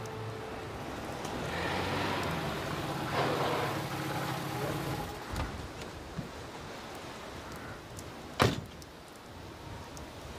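A car engine running for the first few seconds as the car pulls up, then a car door shutting with a single sharp knock near the end.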